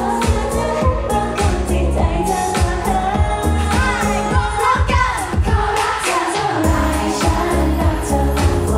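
Thai pop song performed live over a PA: female voices singing into microphones over a backing track with a heavy, steady bass beat. A little past the middle the bass drops out briefly under a sweeping sound, then the beat comes back.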